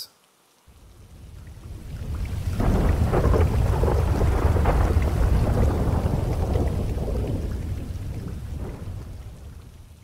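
Rolling thunder with rain: a deep rumble that swells in over the first few seconds, peaks near the middle and slowly dies away.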